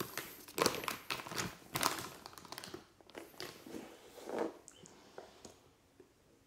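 Thin plastic CPR face shield crinkling and rustling as gloved hands handle it, in irregular bursts that fade out after about three seconds, with one more rustle a little later.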